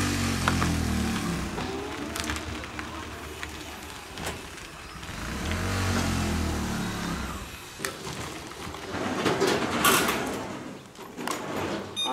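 A motor vehicle's engine passes twice, each time rising and then falling in pitch. Scattered knocks and a burst of clatter come near the end.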